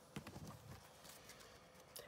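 Faint handling of a deck of playing cards: a few light taps near the start and a soft rustle as a card is drawn, over near-silent room tone.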